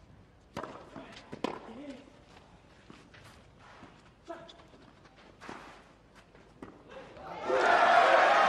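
Tennis rackets striking the ball in a rally, a sharp pop roughly once a second beginning with the serve. Near the end a crowd breaks into applause that swells quickly and stays loud.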